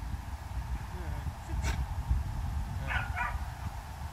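Dutch shepherd giving two short, high yips in quick succession about three seconds in. A single sharp click comes a little before.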